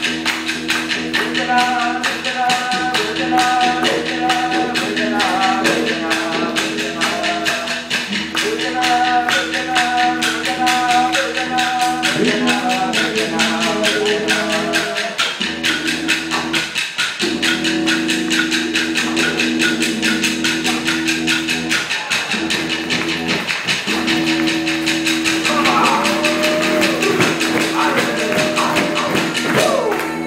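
Didgeridoo playing a steady low drone that breaks off briefly a few times for breath, over sticks clicked together in a fast, even beat. Male voices sing a repeated chant in the first half, and gliding calls and shouts come near the end.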